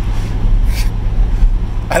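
Twin-turbocharged C8 Corvette's 6.2-litre V8 running at a steady low rumble, heard from inside the cabin along with road and wind noise.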